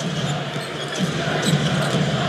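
A basketball being dribbled on a hardwood court, heard over the steady noise of an arena crowd.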